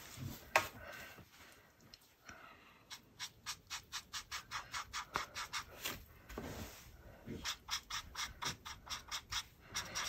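Faber-Castell Pitt big-brush pen strokes on paper: a run of short, quick scratchy strokes, about three or four a second, as the tip lays in large dark areas of an ink drawing.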